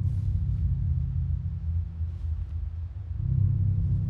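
A low, steady droning rumble with a deep hum, swelling a little about three seconds in. It is a suspense drone of the kind laid under tense moments, with no knock audible.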